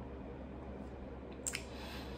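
Quiet room tone with a steady low hum, and a brief lip smack about one and a half seconds in.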